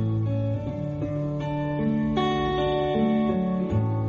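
Music: an instrumental passage led by guitar, its chords changing every second or so.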